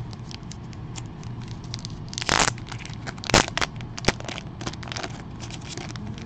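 Plastic bag of trading cards crinkling as it is opened and the cards are handled and slid out: a run of light crackles, with two louder rustles about two and three and a half seconds in.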